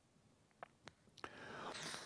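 A man's mouth making a few small clicks, then a soft in-breath that swells over the last second as he draws air to speak.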